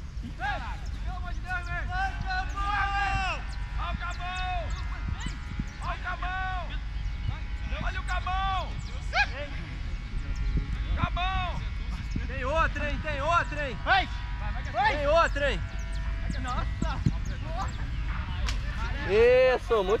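Footballers shouting short calls to each other across an open grass pitch, about one every second or two, with a few sharp knocks of the ball being kicked, all over a steady low rumble. A louder, closer shout comes at the very end.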